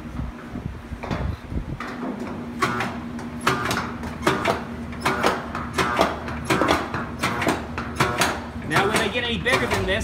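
Rapid metal tapping on a sheet-metal chase cap as a round collar is set into it, about two strikes a second, each with a short metallic ring. The tapping starts about two and a half seconds in, after some handling noise.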